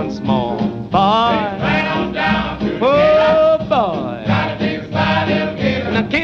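Swing jazz music with a steady beat and a lead line that slides up and down in pitch.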